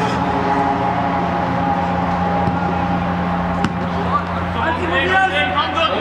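Football players shouting to each other across the pitch from about four seconds in, over a steady low hum. A single sharp knock comes just before the shouting.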